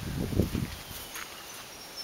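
Low rumbling bumps in the first half-second or so, then a quiet outdoor background with faint high chirps.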